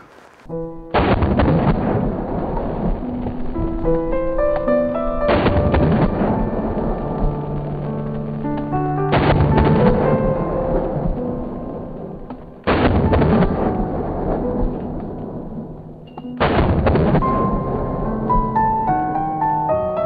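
Music with held piano-like notes, cut through by five deep, drawn-out booms about every four seconds: 12-gauge shotgun blasts of Dragon's Breath rounds, slowed down for slow motion.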